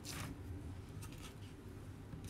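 Quiet handling sounds as a screen-printing frame is lifted off a freshly pulled print and the paper sheet is handled: a brief swish just after the start, then faint rustling.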